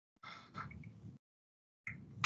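A faint breath picked up by a video-call microphone, lasting about a second, set between stretches of dead digital silence where the line is muted; the sound starts again briefly near the end.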